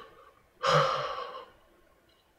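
A man's single heavy, breathy breath, about half a second in and lasting nearly a second, in awe after an exciting scene.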